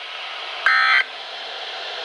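Weather radio receiver sending one short burst of SAME digital data tones, a harsh electronic screech, about two-thirds of a second in, over steady radio hiss. It is the end-of-message code that closes a broadcast warning, the first of three repeated bursts.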